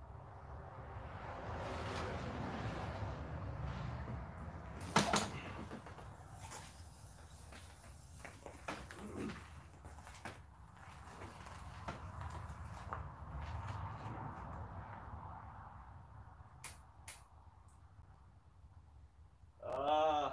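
A dirt bike being wheeled by hand over concrete and gravel: tyres rolling, with handling knocks and clicks and one sharp knock about five seconds in. The engine does not run.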